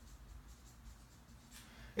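Dry-erase marker writing on a whiteboard: faint, irregular scratching strokes as a word is written out.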